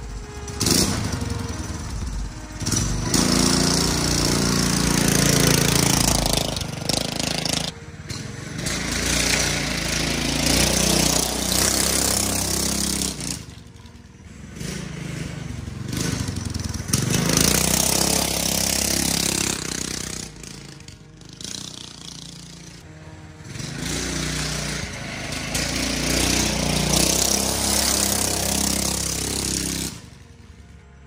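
Predator 212cc single-cylinder engine, run without an exhaust, powering a converted dirt bike as it is ridden around: the engine revs up and down, swelling loud and fading about four times as the bike passes and moves away.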